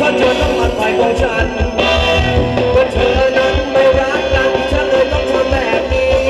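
Live band playing upbeat Thai ramwong dance music, with a steady beat under a sustained melody line.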